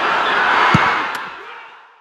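A loud, even rush of noise with a couple of faint clicks, fading out over the second half.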